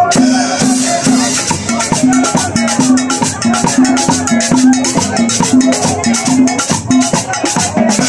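Upbeat Latin dance music with a busy shaker-and-drum rhythm over a repeating low bass note.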